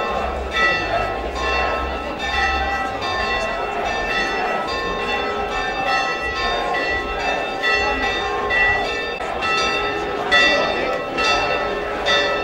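Church bells ringing in a continuing series of unevenly spaced strokes, each stroke ringing on, with the voices of a large crowd underneath.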